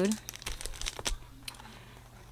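Clear plastic sleeve of metal cutting-die packaging crinkling as it is handled, a run of irregular crackles in the first second and a half, then fainter rustling.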